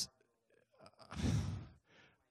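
A man exhales audibly into a microphone about a second in, a single breathy sigh lasting about half a second, between his words.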